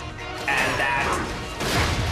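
Cartoon action soundtrack: a loud, high crowing cry about half a second in, over music with crashing impacts.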